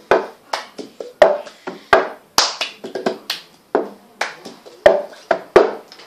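Cup song routine: hand claps and a plastic cup being tapped and knocked down on a tabletop in a quick, even rhythm, about three hits a second.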